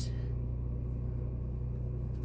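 A steady low hum, with no distinct handling sounds over it.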